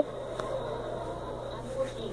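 Low room noise with a steady low hum, a faint click about half a second in and a small bump near the end.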